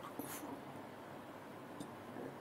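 Near-quiet pause: faint room hiss, with a short, faint hissing sound about a third of a second in and a tiny click near the end.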